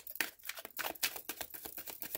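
Tarot deck being shuffled by hand: a quick, irregular run of crisp card clicks and flicks.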